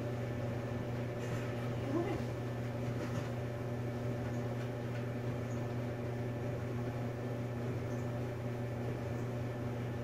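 Steady low mechanical hum of a household appliance or fan running, with a few faint soft rustles and one brief faint squeak about two seconds in.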